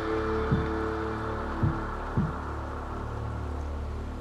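Background music score: sustained low tones that fade out over a steady low hum, with a few soft low drum thuds.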